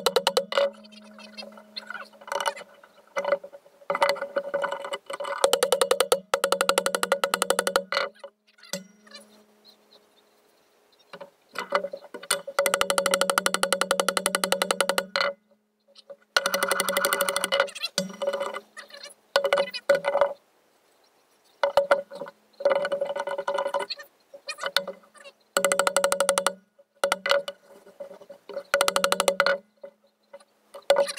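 Hammer striking rapidly on the steel of a large antique monkey wrench in runs of quick blows a few seconds long, with short pauses between. The iron rings with each run. The blows are meant to drive off the pommel end, which is probably just pressed on.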